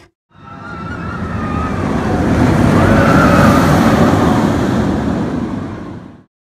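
A long whoosh sound effect that swells up, peaks midway and fades away, with a faint whistling tone through it.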